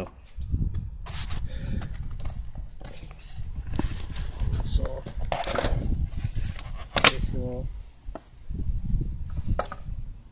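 Handling noise and rustling from a handheld phone camera being moved around a motorcycle, with a low rumble and scattered clicks and knocks. A sharp click comes about seven seconds in.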